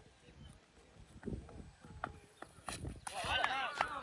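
A few faint, irregular knocks and taps, then a person's voice faintly talking from about three seconds in.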